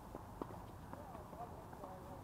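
A few faint, sharp knocks of a tennis ball on an outdoor hard court, the loudest about half a second in, with distant voices.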